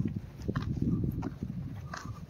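Footsteps knocking irregularly on a path while walking, over a low wind rumble on the phone's microphone.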